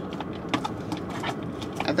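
Light, irregular clicks and taps of small hard objects being handled by hand, among them a spare camera battery taken from the car's cup holder.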